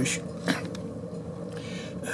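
Steady low background hum of the running wood-pellet rocket stove boiler, with a brief vocal sound about half a second in.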